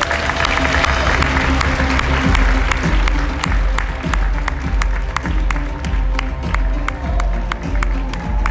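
Audience applause over loud walk-on music with a steady beat and heavy bass. The applause is strongest at the start and dies away over the first few seconds, while the music carries on.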